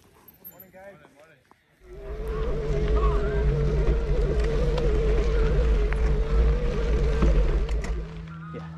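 Wind rushing over the camera microphone while a mountain bike is ridden up a dirt trail, starting abruptly about two seconds in, with a steady, slightly wavering whine running underneath.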